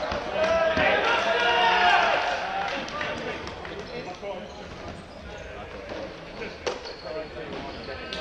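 Indoor ultimate players shouting to each other across a large echoing hall for the first couple of seconds, then quieter footsteps and shoe noise on the wooden court, with one sharp knock near the end.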